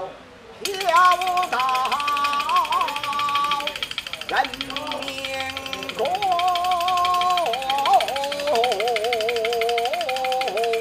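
A man half-singing a Chinese verse in long, wavering held notes, over a fast, continuous clatter of handheld wooden clapper boards that starts about half a second in.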